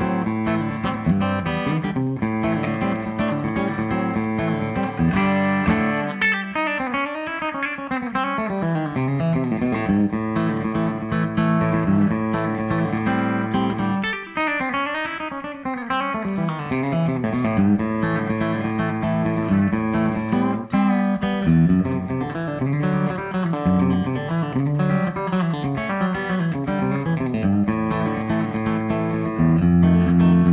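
Esquire electric guitar with a single Peter Florence Voodoo bridge pickup, played through a Keeley compressor, an MI Audio Blue Boy Deluxe overdrive and a Fender Blues Junior amp, with the tone knob turned up for a bright sound. It plays country lead licks of fast picked notes, with two quick sweeping runs about six and fourteen seconds in.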